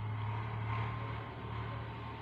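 A pause between speech, filled only by a steady low hum and faint hiss of background noise.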